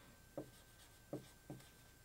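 Dry-erase marker writing on a whiteboard: three faint, short strokes about half a second, one second and a second and a half in.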